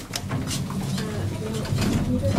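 Lift floor buttons being pressed: a few sharp clicks, over a low, wavering hum that grows louder in the second half.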